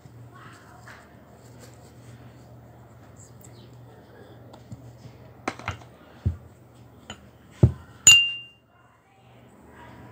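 A kitchen knife and a porcelain cup give several light knocks and clinks in the second half, ending about eight seconds in with one sharp, ringing clink of metal on porcelain. A faint low hum runs underneath.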